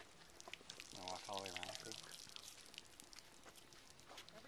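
Water pouring and splashing from the spout of a borehole hand pump onto a concrete apron as its handle is worked.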